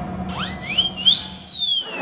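A comic whistle-like sound effect in the performance's backing track: a tone that climbs in quick steps, then glides slowly down, over quiet backing music that drops out near the end.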